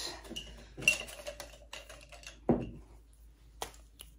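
Light clicks and clinks of small objects being picked up and moved about while supplies are searched for, with a sharp click about a second in and another short one near the end.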